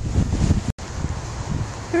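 Wind buffeting the camera microphone in a rough, uneven rumble over the steady rush of a flood-swollen creek with a strong current. The sound cuts out completely for a split second about a third of the way in.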